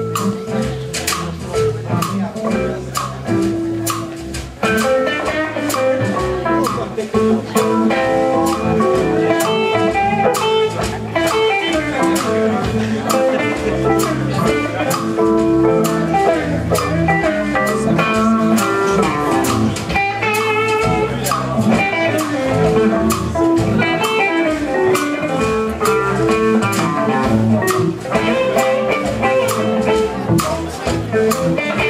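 Live blues band playing an instrumental passage, guitar over drum kit. The music fills out and gets louder about four and a half seconds in.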